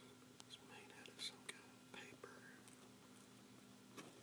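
Faint close-up handling sounds of a 1930s folding camera being cleaned: several small sharp clicks and taps, with soft whispering in between.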